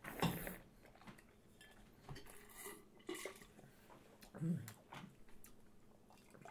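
Red wine being slurped through the lips to draw air over it in the mouth: a hissing intake right at the start and another about two seconds in, with a few faint clinks of wine glasses.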